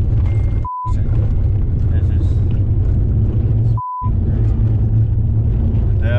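Steady low road rumble and engine noise inside a moving team car's cabin. Twice, about three seconds apart, a short, pure, high bleep briefly blanks out all other sound.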